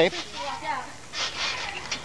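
Speech only: young men's voices talking, the word "tape?" at the start and then indistinct chatter.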